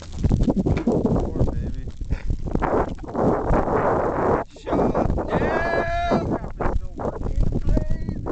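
Burning wreckage of a Hangar 9 Sundowner electric RC plane crackling in open flames, under loud, uneven rushing noise. A short voice-like call with a bending pitch comes about five and a half seconds in.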